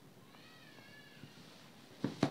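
Near silence with one faint, high-pitched, slightly wavering call lasting under a second, starting shortly after the beginning.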